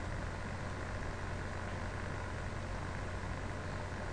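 Steady low hum and even hiss with no distinct event: room tone from the recording setup.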